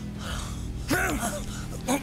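A man gasping and groaning in pain, with one short rising-and-falling cry about a second in and another brief gasp near the end, over a steady background music drone.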